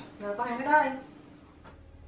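A short spoken phrase from one voice, followed by a faint click and then low room noise.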